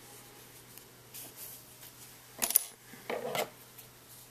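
Metal scissors clinking twice, sharp and bright, as they are picked up, followed by a short rustle of handling against the yarn.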